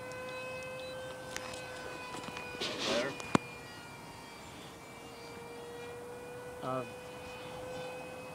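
Electric ducted fan of a small RC foam F-18 Hornet jet whining overhead: one steady tone with overtones, wavering slightly in pitch. A short voice murmurs near the middle and again near the end, and a sharp click comes just past three seconds in.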